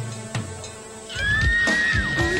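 Music from a TV commercial's soundtrack. About a second in, a loud high tone slides up and then holds steady.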